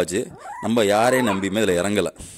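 Kanni puppies yipping and whimpering, with a short rising whine about half a second in.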